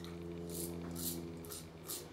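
An adjustable safety razor making about four short, soft scratchy strokes over stubble, each a fraction of a second long. A steady low hum runs underneath and fades out near the end.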